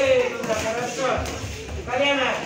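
Several voices shouting and calling out over one another, fairly high-pitched and without clear words, as ringside encouragement during a kickboxing bout.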